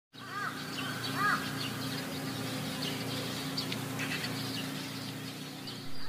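Jungle ambience with birds calling: two short arched calls in the first second and a half, and many small high chirps scattered throughout, over a steady low hum.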